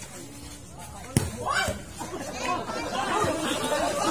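A single sharp smack of a volleyball being hit about a second in, followed by players shouting and chattering over each other.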